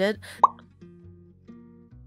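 A single short, loud pop that slides quickly upward in pitch, about half a second in, followed by soft background music of plucked guitar notes.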